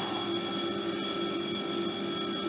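Steady electrical-sounding hum with a few faint constant tones: room tone, with no distinct knocks or footsteps.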